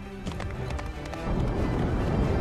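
Orchestral film score over the galloping hoofbeats of Bullseye, the toy horse, as quick sharp clip-clops. About halfway through, a low rumble swells in and gets louder.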